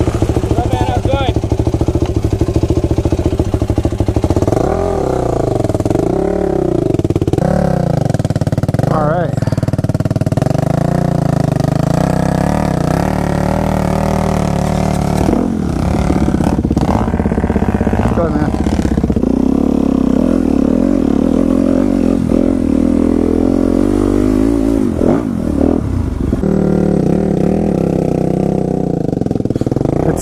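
Dirt bike engine heard up close from the rider's helmet camera, running loudly and revving up and down repeatedly while riding a rough dirt trail.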